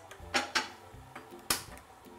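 A few sharp clicks and knocks, the sharpest about one and a half seconds in, as a frying pan is handled on a gas stove and the burner is lit with a gas lighter.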